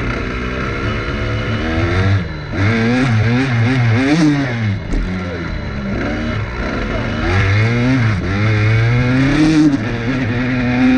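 Dirt bike engine revving up and down as the throttle is worked. The revs dip briefly about two seconds in and again near five seconds, then climb steadily near the end.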